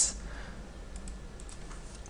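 A few faint keystrokes on a computer keyboard, typing code, over low steady background noise.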